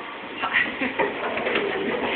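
A young child's high-pitched vocal sounds, short squeals and coos starting about half a second in, over steady background noise.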